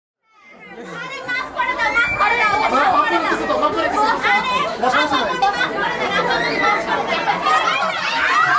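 A crowd of people talking over one another, many voices chattering at once. It fades in from silence over the first second.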